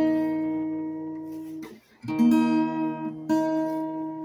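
Acoustic guitar chords strummed and left to ring: one chord fades from the start, a new strum comes about two seconds in and another a little after three seconds. The player is checking his tuning and finds a string still off, 'too flat, too sharp'.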